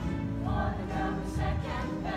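Musical-theatre number: a chorus of voices singing together over an instrumental accompaniment with a strong bass.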